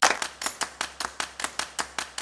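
Rapid, evenly spaced clicks in a steady rhythm, about six or seven a second.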